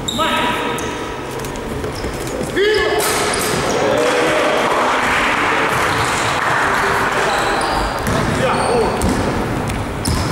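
Basketball game sounds in an echoing sports hall: a ball bouncing on the court, and voices. Short squeaks come right at the start and again about two and a half seconds in.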